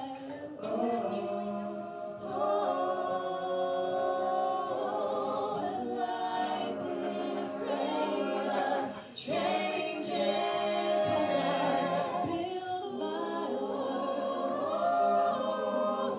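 A group of singers vocalising wordless harmony in held, choir-like chords, with a short break about nine seconds in.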